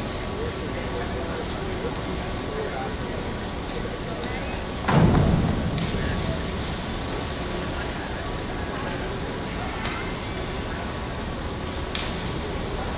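A diver entering the pool: a single sudden splash about five seconds in that dies away over about a second, over the steady noise of an indoor pool hall.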